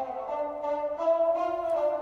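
Orchestral music with long held notes playing from a flat-screen TV's built-in speakers at full volume, sounding thin with little bass.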